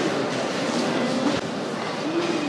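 Wheels of a carry-on suitcase rolling over a hard corridor floor, a steady rumble, with one sharp click partway through.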